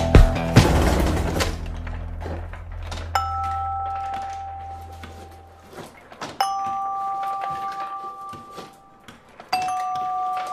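Background music ends in the first second and a half, its low tone fading away, then three separate bell-like chime strikes about three seconds apart, each a clear ding that rings out slowly.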